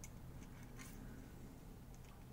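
Quiet room tone with a few faint, light clicks of a metal feeler gauge being worked in the throttle-butterfly gap of a motorcycle carburettor bank.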